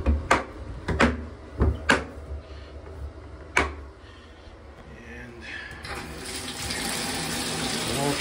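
A few sharp plastic clicks and knocks as the Apache 4800 hard case is latched shut and handled. About six seconds in, the bathtub tap is turned on and water runs steadily into the empty tub.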